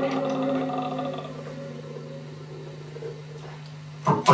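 Electric guitar chord through a small amplifier, left ringing and fading over the first second or so, leaving a low steady tone sustaining quietly.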